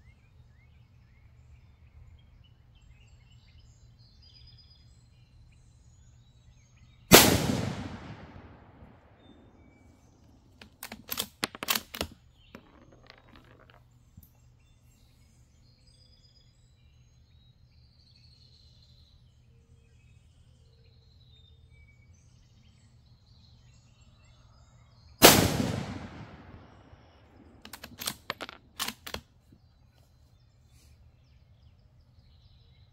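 Two shots from a Savage Axis II heavy-barrel bolt-action rifle in 6mm ARC. The first comes about seven seconds in and the second about eighteen seconds later, and each rings out and dies away over a couple of seconds. A few seconds after each shot comes a quick run of sharp metallic clicks as the bolt is worked to eject the case and chamber the next round. Birds chirp faintly in the background.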